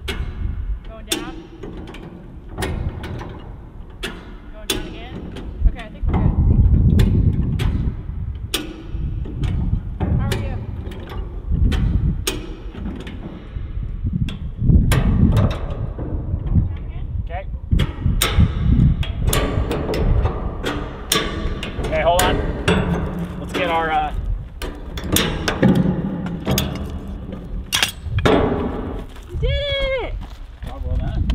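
Hi-Lift jacks being worked down one click at a time, giving repeated sharp metal clacks, as a steel shipping container is lowered. Deep thuds come in between as the container's weight settles.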